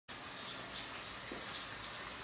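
Steady rush of water running from bathroom taps, left running to test the plumbing for leaks.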